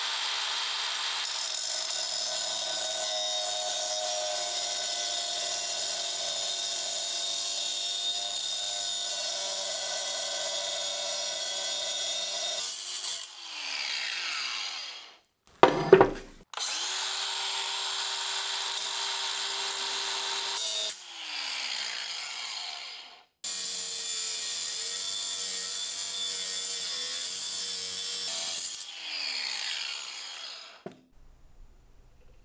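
Angle grinder with a cut-off wheel cutting a metal pipe elbow to length: three long runs of a steady high whine with a grinding hiss, each winding down with a falling pitch when the trigger is let go. A single loud clack between the first and second runs.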